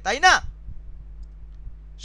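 A short spoken syllable at the start, then a steady low electrical hum in the recording with a few faint soft clicks.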